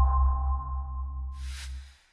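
Tail of an electronic broadcaster's jingle: two ringing chime tones over a deep bass drone, fading out, with a brief whoosh near the end before it stops.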